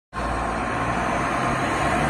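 Fire truck diesel engine running steadily, a low rumble.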